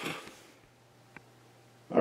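A man's breathy laugh trailing off within the first half second, then quiet with a single faint click just over a second in.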